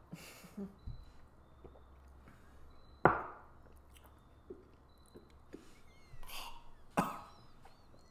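A man clearing his throat and coughing after swallowing beer the wrong way, with two sharp knocks on a table, about three and seven seconds in, the first the loudest, as glasses are set down.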